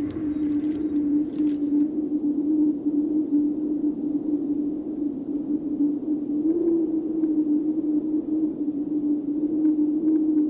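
A steady low electronic drone holding one pitch, wavering slightly and bending up briefly about two-thirds of the way through. It is the bed of an advert soundtrack. A few faint clicks sound in the first couple of seconds.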